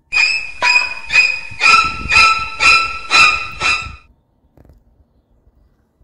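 A metallic bell-like ringing, struck about twice a second for eight strokes, each stroke sounding the same set of ringing pitches; it stops abruptly about four seconds in.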